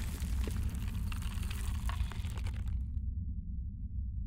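Logo-animation sound effect of stone cracking and crumbling: a deep low rumble with crackling debris above it. The crackle fades out a little under three seconds in, leaving only the low rumble.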